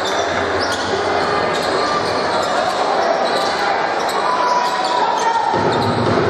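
Crowd chatter echoing in a basketball gym during live play, with a basketball bouncing on the hardwood court and brief high squeaks of shoes.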